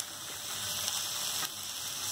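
Chopped spinach sizzling steadily in hot oil in an iron kadai while it is stirred with a steel spatula.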